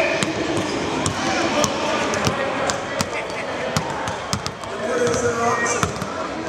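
Several basketballs bouncing on a hardwood court, a scatter of irregular sharp thuds, over background voices in a large hall.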